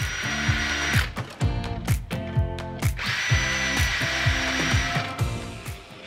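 DeWalt cordless drill running with a steady high whine in two bursts, one at the start and a longer one from about three seconds in, boring pilot holes for hinge screws with a self-centering hinge bit.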